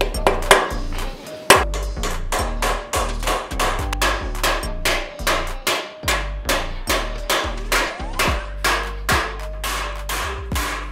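Repeated hammer blows, about two a second and varying in strength, driving new bushes into the pin bore of a mini excavator's steel dipper arm, heard over background music with a steady bass.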